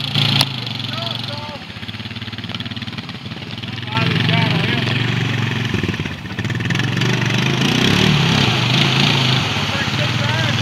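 Honda Rancher 420 ATV's single-cylinder engine running under throttle as the quad churns through deep muddy water, with water splashing. It gets louder from about four seconds in.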